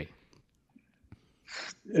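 A pause of near silence, then, about one and a half seconds in, one short audible breath from a man about to speak, over a video call's audio.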